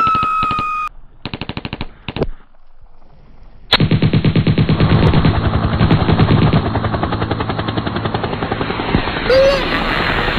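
Machine-gun fire sound effect: a whistling tone that stops about a second in, a short rapid burst, then from about four seconds in a long unbroken stream of rapid fire.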